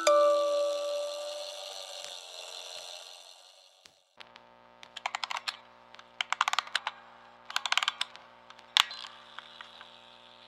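The last notes of a music box melody ring out and fade away over about four seconds. After a brief silence, faint clicking comes in three quick clusters over a low steady hum, with one sharp click near the end.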